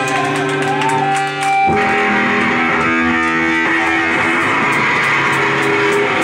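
Live rock band playing loud, led by electric guitar holding sustained notes and chords over bass. There is a brief dip about a second and a half in before the full sound comes back.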